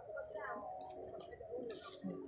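Faint cooing of a dove in the background, with a few soft low calls.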